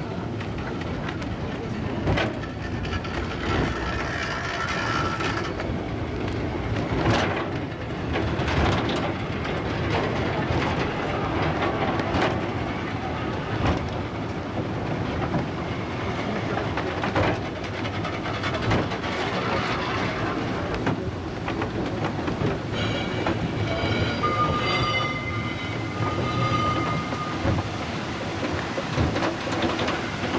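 Cable-hauled funicular car running along its track, a continuous rumble of wheels on rail with scattered sharp clicks over rail joints. Brief high-pitched wheel squeals come early on and again for several seconds in the last third.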